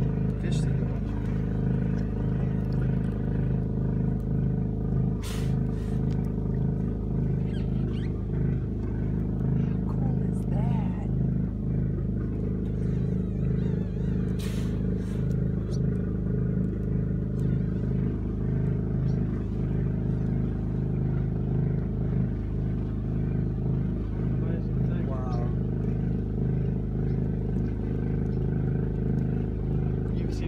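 A boat's generator running steadily, a constant engine drone with a fast low pulse.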